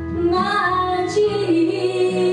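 A woman singing a slow gospel song into a microphone, holding and sliding between notes, over a sustained low accompaniment.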